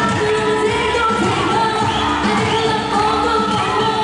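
A live pop song: a female singer's amplified voice over loud backing music played through the PA speakers.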